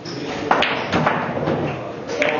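Pool balls striking: two sharp knocks about half a second apart.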